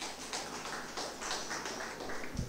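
A few people clapping, sparse and uneven.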